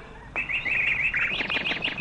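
Birds chirping: a rapid run of short, high, repeated chirps begins about a third of a second in.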